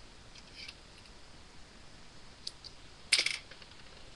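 Hands working a plastic bottle piece, balloon and scotch tape for a homemade slingshot: faint crackles and small clicks, then a short, loud rasp about three seconds in.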